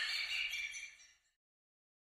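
A high-pitched, hissy sound fades and cuts off about a second in, leaving dead silence as the audio track ends.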